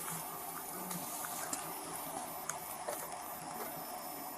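Steady, even background hiss with no distinct events, only a few faint ticks.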